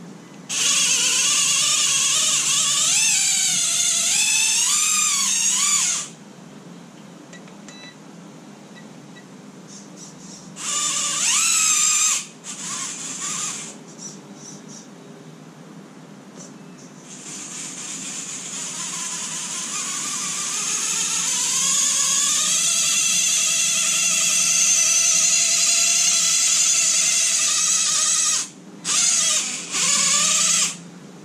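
Axial Capra 1.9 RC rock crawler's electric motor and gear drive whining in bursts as the throttle is worked, the pitch wavering up and down with speed. The longest run builds up gradually in the second half and cuts off sharply, with a last short burst near the end.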